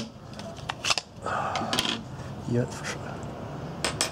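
Small parts of a fire piston being handled on a wooden tabletop: a few light clicks and taps, with a short scraping rub about a second and a half in.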